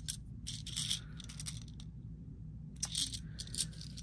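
Small matte fiber optic glass beads clicking and rattling against a white triangular bead tray as fingers push them around. The light ticks come in scattered runs, with a pause of about a second around the middle.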